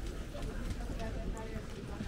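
Outdoor street ambience: people talking nearby, with scattered footsteps clicking on stone paving.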